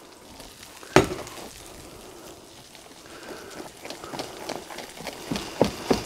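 Pressed potatoes being stirred with warm milk in a stainless steel bowl. A single sharp knock comes about a second in; from about four seconds on, the spoon scrapes and clicks against the bowl more and more often.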